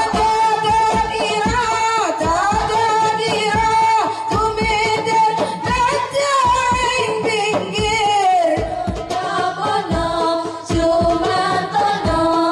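A group of young female voices sings an Islamic sholawat in unison into microphones, with a melismatic, sustained melody. Hand-held frame drums beat a steady rhythm underneath.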